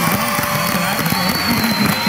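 Several people talking over one another at once, with no single voice standing out.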